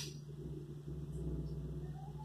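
Quiet room tone: a steady low hum, with one short click right at the start.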